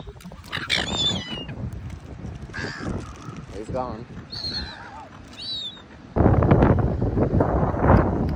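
Silver gulls calling: several short, harsh squawks that fall in pitch. About six seconds in, loud wind buffeting on the microphone takes over.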